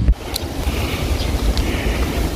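Wind buffeting the microphone outdoors: a loud, uneven low rumble over a steady hiss. It drops off suddenly just after the start, then carries on more softly.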